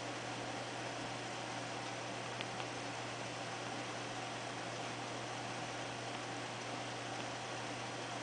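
Steady background hiss with a constant low hum, and two faint ticks about two and a half seconds in.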